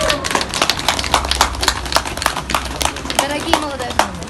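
Scattered hand claps from a small group of people, sharp and irregular, about four or five a second, with a few voices among them.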